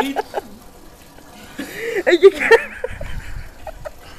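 A man's short burst of laughter about a second and a half in, after a quieter stretch, with a low rumble near the end.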